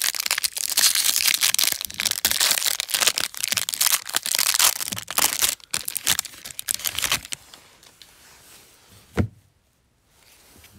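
A plastic baseball-card pack wrapper being torn open and pulled off the cards, crinkling and crackling for about seven seconds. Then it goes much quieter, with a single soft thump shortly before the end.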